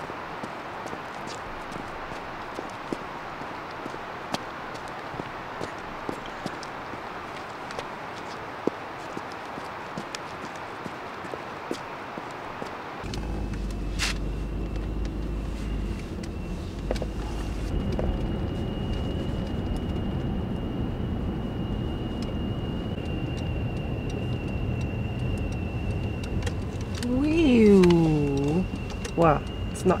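Boots tapping and scuffing on an asphalt road over a steady hiss. About halfway through, the sound changes to the cabin of a moving 4x4: low engine and road rumble with a steady high whine, and a voice rising and falling near the end.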